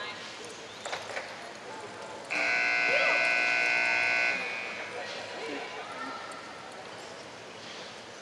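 Arena run-clock buzzer sounding once, a steady electronic tone lasting about two seconds, starting a couple of seconds in as the cutting run's clock reaches zero: the signal that the run's time is up.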